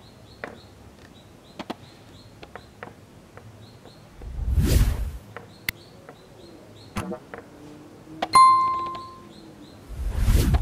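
Subscribe-button sound effect: a loud whoosh about four seconds in, a couple of clicks, then a bell-like ding near the end that rings out for about a second. Underneath are faint bird chirps and small taps of bamboo sticks being set on the kite paper.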